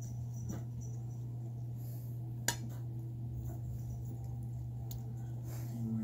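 A cat chewing and licking at a slice of pizza on a plate, with small wet eating sounds over a steady low hum, and one sharp click about two and a half seconds in.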